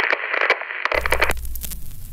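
Radio static sound effect: a narrow, radio-like hiss, joined about a second in by a low hum and full-range crackle, ending the intro's music.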